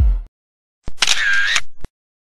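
Electronic dance music cuts off just after the start. After a gap of dead silence, an edited-in camera-shutter-style sound effect: a click, a short noisy whirr of about half a second, and a second click, then dead silence.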